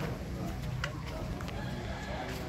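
A few light knocks of footsteps on wooden boards, under people talking in the background.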